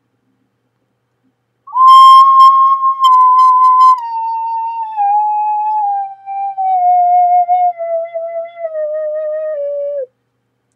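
12-hole alto C ocarina played as a slow descending scale, about two seconds in: a loud, clear high note held for about two seconds, then softer notes stepping down one by one. The player's thumb was partly off the back hole at the time, by his own account.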